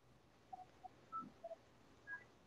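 Near silence on an open video-call line, with a few faint, short pitched pips.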